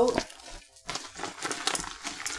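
Thin plastic vinyl of a deflated glitter beach ball crinkling and crackling as it is handled and folded, a scatter of small sharp clicks.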